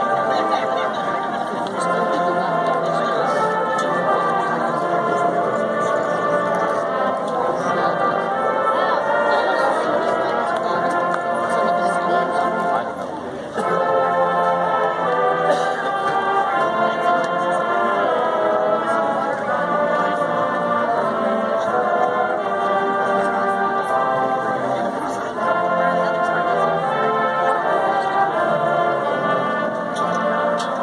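A high school marching band's brass and winds play the school alma mater in slow, sustained chords, with voices singing along. The music briefly drops between phrases about halfway through.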